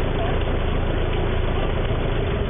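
Boat engine idling with a steady low rumble under an even hiss of noise.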